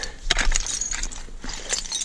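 A few scattered clicks and clinks from a rake's tines working through dump soil full of broken glass and debris.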